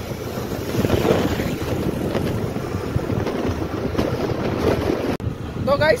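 Wind rushing over the microphone while riding a two-wheeler, a steady loud buffeting. It breaks off abruptly near the end, and a man's voice begins.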